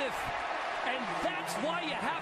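Men's voices on a TV football broadcast over the steady noise of a stadium crowd after a touchdown, with a few short sharp knocks.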